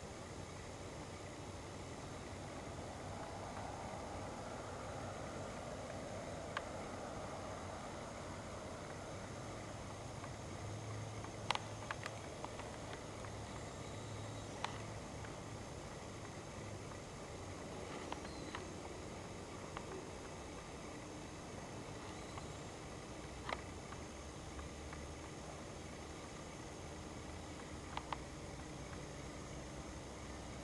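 Faint outdoor night ambience under a steady hiss, with a soft swell of distant noise early on that fades, and about eight sharp clicks scattered through it.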